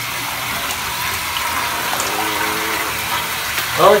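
A bath bomb fizzing steadily as it is held under the bath water, with a soft, even hiss of bubbles and stirred water.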